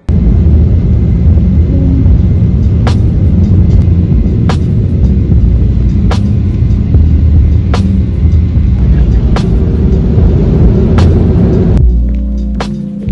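Airliner cabin noise: a loud, steady low rumble, with a sharp click about every one and a half seconds.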